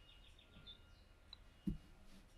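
Faint scratching of a brush pen drawing on paper in a quiet room, with one brief low thump near the end.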